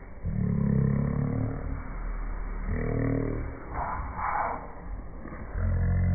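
A girl making low, drawn-out vocal sounds from her throat, three of them in a row, each a second or more long, with a breathy hiss between the second and third.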